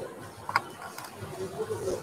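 Automatic touchless sanitizer dispenser working as hands are held under it: its small pump mechanism clicks sharply about half a second in and again more faintly a moment later.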